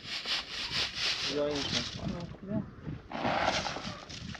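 Sand being sifted through a hand sieve shaken back and forth, a fast, even rasping rhythm for the first two seconds or so. About three seconds in comes a longer scrape of a shovel in sand.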